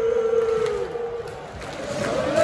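Football crowd singing a terrace chant, holding one long note that slides down and fades about a second in, leaving a general crowd din.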